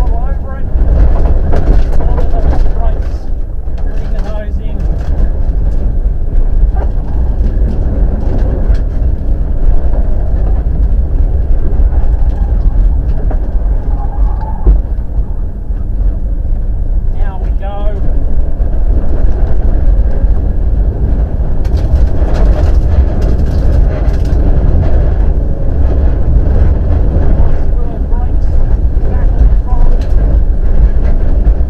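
Rally car engine revving hard, rising and falling through gear changes, heard from inside the cabin over a heavy rumble of tyres on loose gravel.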